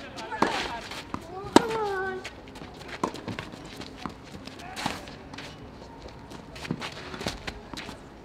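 Tennis rally: a racket strikes the ball about every one and a half to two seconds. On the early shots a player lets out a loud vocal grunt that falls in pitch.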